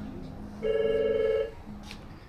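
A telephone ringing once: a short electronic warbling ring lasting just under a second, followed by a brief click near the end.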